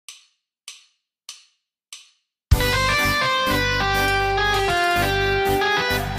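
Four evenly spaced count-in clicks, about two-thirds of a second apart, then a band comes in loudly all at once with guitar and drums, playing held chords over a heavy bass.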